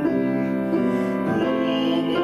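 A man singing a classical bel canto song in a full operatic voice, holding long notes that change pitch twice, with grand piano accompaniment.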